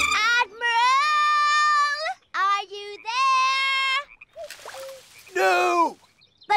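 A young girl's voice singing a tune in long held notes, in several phrases with short pauses between them, the last phrase falling in pitch.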